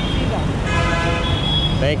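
A vehicle horn honks once, held for about a second in the middle, over steady street-traffic rumble.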